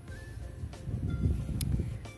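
Soft background music with faint sustained notes, over a low rumble of wind on the microphone that grows louder about a second in.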